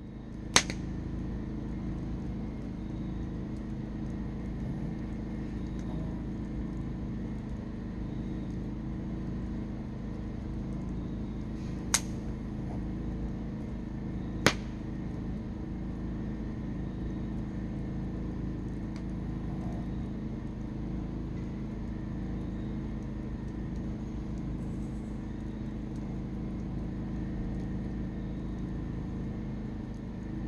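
Wood fire burning in a metal fire pit: a steady low rush of flame with three sharp pops from the burning logs, one just after the start and two more near the middle, about two and a half seconds apart.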